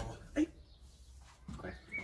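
A beagle gives one short whine about half a second in.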